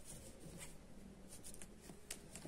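Faint rustling and light scratching of hands and a cloth tape measure moving over woven wool fabric, with a few soft ticks in the second half.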